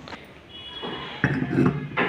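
A person's voice speaking briefly after about a second, with a light knock near the end as a small terracotta lid is set onto a miniature clay cooking pot.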